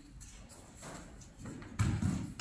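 A person thrown down onto tatami mats: a heavy, dull thud of the body landing in a breakfall near the end.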